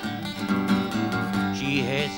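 A skiffle group's acoustic guitar strumming a steady rhythm between sung lines, with the washboard keeping time.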